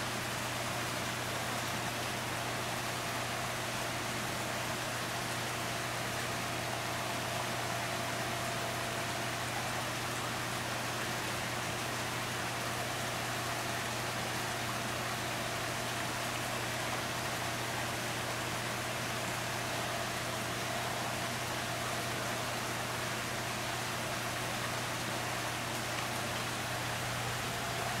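Steady, even rush of moving water with a constant low hum underneath, unchanging throughout.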